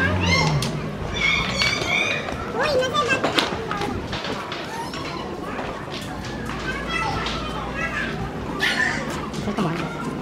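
Children's high voices calling and chattering in the street, loudest in the first few seconds and again near the end, with adult voices and a few sharp knocks.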